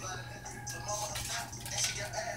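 Faint fizzing and crackle of Alka-Seltzer tablets dissolving in a glass of dyed water under a layer of vegetable oil, bubbles rising through the oil. A steady low hum runs underneath.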